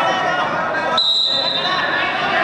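A referee's whistle is blown once about a second in, a steady high note held for about a second, as the wrestling bout is restarted. Voices of coaches and spectators shout throughout in a large hall.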